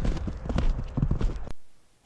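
Footsteps crunching through snow on a flat roof, a quick run of irregular thuds and crunches over a low rumble. The sound cuts off suddenly about a second and a half in.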